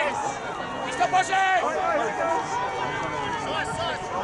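Several voices of ultimate frisbee players and sideline spectators shouting and calling over one another across an open field. A couple of louder calls come about a second in.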